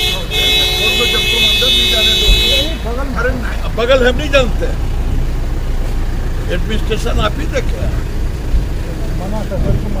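A vehicle horn held in one steady blast of about two and a half seconds near the start, over several voices talking and low traffic rumble.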